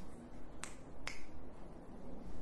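Two short, sharp clicks about half a second apart, over quiet room tone.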